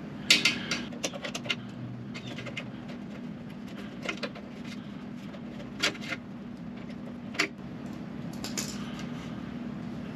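Pliers working a spring clip off a steel clevis pin on a motorcycle's rear brake linkage: small metallic clicks, several close together in the first second, then a few single clicks spaced out, over a steady low hum.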